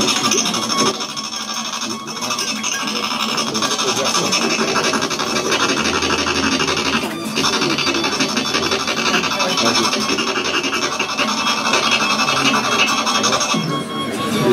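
Improvised noise music from amplified small objects scraped and rubbed on a tabletop: a dense, continuous rasping and scratching texture with steady high tones over it, breaking off briefly about seven seconds in.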